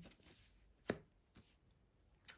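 A single light tap about a second in as a tarot card is handled and set on the cloth-covered table, with near silence around it.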